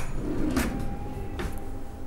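Two soft knocks of kitchen utensils about a second apart, over a faint steady hum.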